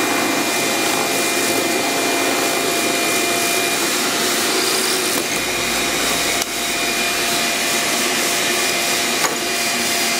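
Drill press running while it bores a hole into an oak block, with a shop vacuum drawing through a dust hose at the table: a steady whir with a faint hum, dipping slightly about six and a half seconds in.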